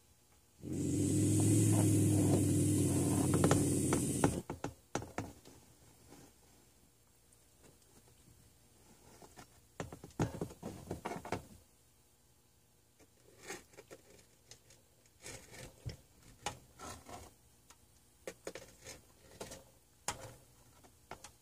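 Young bobcat growling and hissing for about four seconds near the start, then chewing trout with irregular wet clicks and crunches in two spells.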